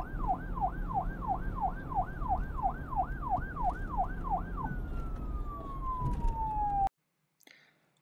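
Siren sound effect warbling rapidly up and down, about two and a half sweeps a second, over a low rumble. About five seconds in it turns into one long falling tone that cuts off suddenly about seven seconds in.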